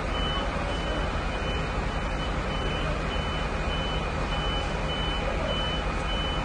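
A fire truck's warning beeper sounding short high beeps at an even pace, about one and a half a second, over the steady running of a truck engine.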